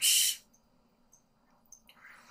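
A hissed 's' ending a spoken word fills the first half-second, then near silence with a few faint clicks.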